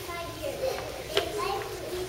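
A young girl's voice reading aloud, high-pitched, with a short sharp click about a second in.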